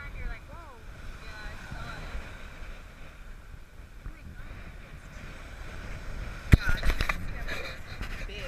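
Steady wind and surf noise, with faint voices in the first couple of seconds. About six and a half seconds in there is a sharp knock, then a run of smaller knocks and rustles, as the fish is picked up in a cloth and handled close to the camera.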